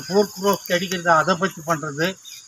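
A man speaking in a raised voice to an outdoor gathering, with a steady high-pitched insect chirring running underneath.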